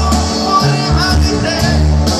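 A banda sinaloense brass band playing live over a concert PA. Sustained tuba bass notes change every half second or so under the brass and reed parts.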